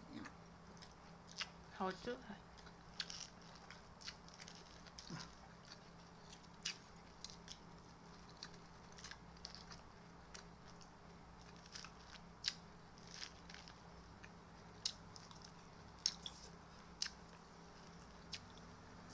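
Close-up chewing of a crisp vegetable salad: irregular crunches and mouth clicks, about one every second or so.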